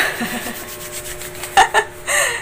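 Soft rubbing as the underarm is wiped clean before waxing, with a short laugh about a second and a half in.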